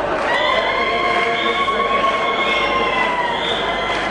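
A long, high-pitched cry from one voice, held for about three seconds, over the steady murmur of a large crowd.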